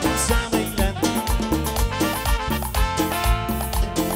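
Live cumbia band playing an instrumental passage: keyboard, saxophone and percussion over a steady dance beat.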